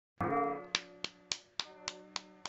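Music begins with a held chord, then a steady beat of sharp clicks, about three and a half a second, over sustained tones.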